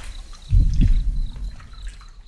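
Pool water gently lapping and trickling, with a steady high chirr of crickets behind it, and two low thumps about half a second in.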